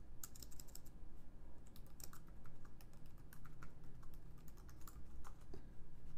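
Typing on a computer keyboard: an uneven run of quick key clicks.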